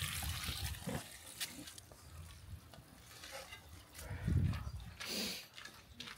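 Water from a garden hose splashing into a metal pot for about the first second, then quieter surroundings. A brief low vocal sound comes about four seconds in.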